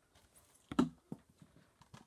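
Plastic Blu-ray cases being handled and set down: a few light knocks and clicks, the loudest about a second in.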